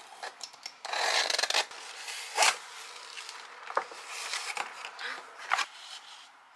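A small hand-held box cutter slicing through packing tape along a cardboard box, a longer rasp about a second in, followed by cardboard flaps being pulled open with short sharp scrapes and rustles.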